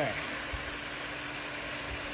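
Chicken pieces and onions searing in a pot, a steady sizzle.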